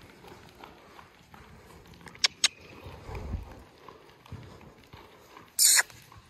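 Horse trotting on a lunge line over soft sand footing: muffled hoofbeats. Two sharp clicks come about two seconds in, and a short, loud rush of noise near the end.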